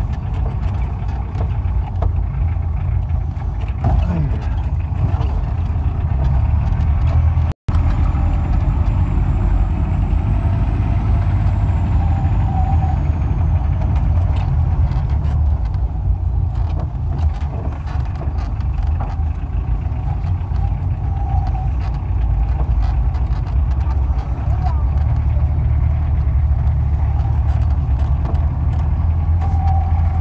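A jeep's engine running and its tyres on a dirt track, heard from on board as a steady low rumble. The sound cuts out completely for an instant about seven and a half seconds in.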